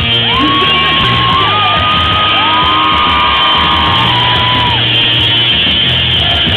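Live rock band playing loud, with drums and guitars under several long held notes that slide up, hold, and fall away.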